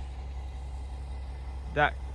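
A heavy engine idling: a steady low rumble.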